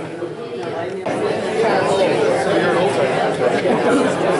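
Many people talking at once in a large room: a seated audience chattering, louder from about a second in.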